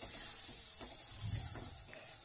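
Mashed bean bharta frying in a nonstick wok with a steady faint sizzle, as a spatula stirs and scrapes it around the pan.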